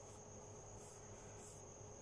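Near silence: room tone with a faint, steady high-pitched whine and a few soft hisses.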